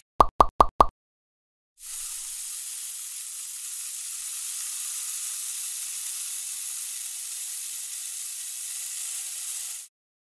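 A quick run of five short pitched pops, then, from about two seconds in, a steady dry hiss of a small hand trowel scraping lines into fine sand.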